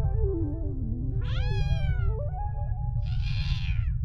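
Cartoon cat meowing: one falling meow about a second in and a second, harsher call near the end, over background music with a slowly descending, stepped melody.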